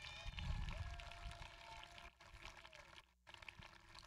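Faint, scattered clapping from a widely spread-out crowd, many small irregular claps over a low rumble, with a brief dropout about three seconds in.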